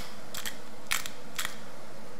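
Hand-twisted pepper mill grinding peppercorns: four short crunching strokes about half a second apart, one with each twist.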